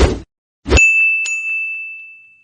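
Outro sound effect: a short thump, then a second hit that becomes a high bell-like ding, struck again about half a second later and fading as it rings out.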